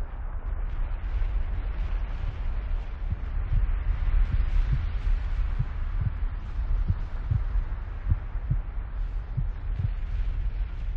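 A deep, steady rumble with a windy hiss, and low thumps coming in pairs like a heartbeat from about three seconds in. It is a dramatic sound effect.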